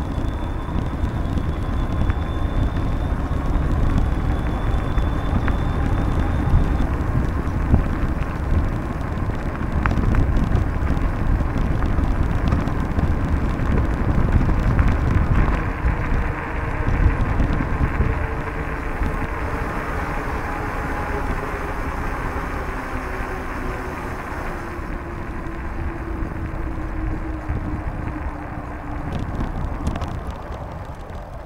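Steady wind rumble on the microphone of a moving bicycle, with its tyres rolling on an asphalt path; it eases off a little past halfway.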